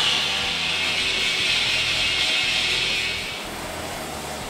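A grinder working on iron, giving a steady, hissy grinding noise that fades out about three and a half seconds in. Background music plays underneath.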